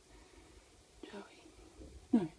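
Near silence with faint room tone, broken about a second in by a brief, soft human voice, close to a whisper.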